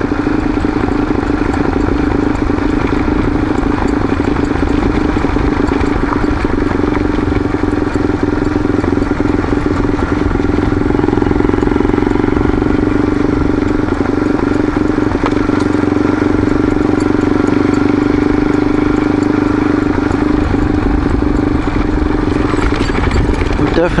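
A vehicle's engine running at a steady pitch while driving along a gravel road, with tyre and road noise underneath.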